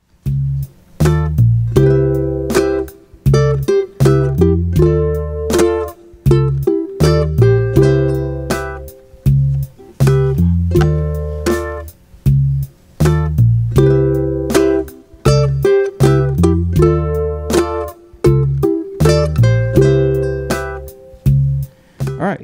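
Ukulele playing a Motown/Stax-style soul fill in double-stops (thirds and sixths) over C, Dm7 and C, in time with a backing track that carries a bass line. The phrase comes round about every six seconds.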